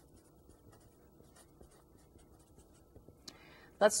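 Felt-tip marker writing on paper: a string of faint, short strokes as words are written out.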